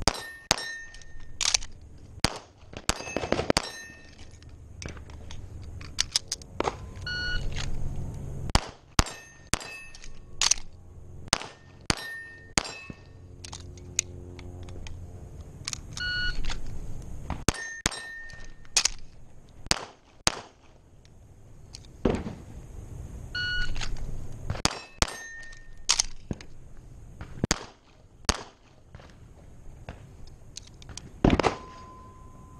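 A shot timer beeps, then a fast string of handgun shots follows; this start-beep-and-shots cycle comes three times, with a string of shots already going in the first few seconds. Between strings there are quieter gaps.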